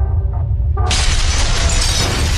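Logo-sting sound design: a deep bass drone under music, then a little under a second in, a sudden loud crash of shattering sets in and carries on with many small breaking fragments.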